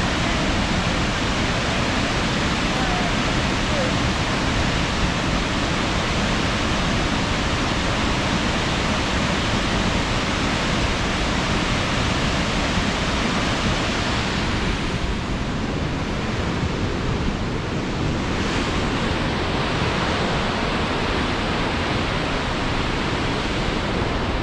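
Burney Falls waterfall plunging into its pool: a loud, steady rush of falling water. The highest part of the hiss thins for a few seconds past the middle, then comes back.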